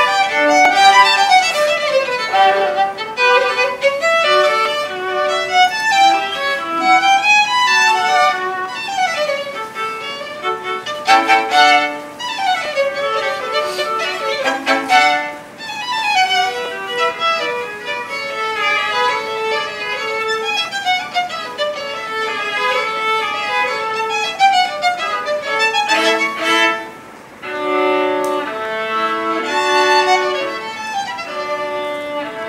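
Two violins playing a duet, with quick runs and interweaving melodic lines, and short pauses between phrases about halfway through and near the end.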